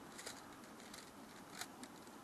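Faint, light clicks and ticks of tent pole sections being handled and fitted together, a handful of quick irregular clicks with the sharpest about one and a half seconds in.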